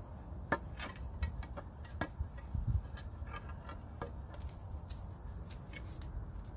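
Black electrical tape being peeled and unwound off a debarked wooden cane, giving irregular sharp crackling clicks as it comes away, over a low steady rumble.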